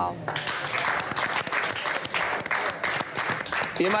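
Studio audience applauding: a steady wash of many hands clapping, which starts just after a man's voice ends and fades as speech resumes near the end.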